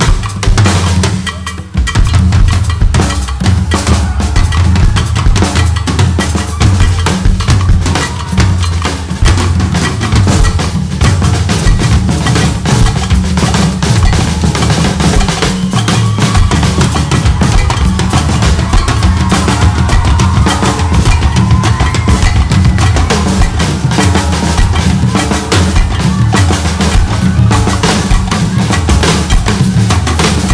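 Two drum kits played together in a live Afrobeat drum duet: a dense run of bass drum, snare, rimshot and cymbal strokes. The drumming drops away for a moment near the start, then comes back at full strength.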